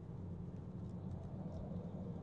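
Low, steady road and tyre noise inside the cabin of a 2019 Tesla Model 3 driving at low speed, with a few faint ticks; the electric car adds no engine sound.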